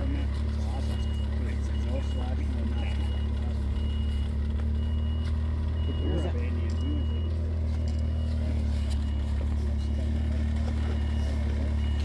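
Steady low hum of an idling engine, with a faint high-pitched beep repeating about once a second and faint voices in the background.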